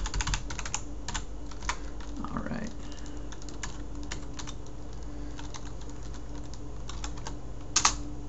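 Computer keyboard being typed on in bursts: a quick run of keystrokes at the start, scattered keys through the middle and a louder cluster near the end, over a steady low hum.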